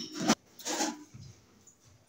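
A child's footsteps as she runs across a rug-covered floor: a few short, soft sounds with gaps between them.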